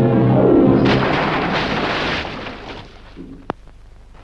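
Film score music over the first second, then a loud rushing splash of a man jumping into a river, which fades away over about two seconds. A single sharp click comes near the end.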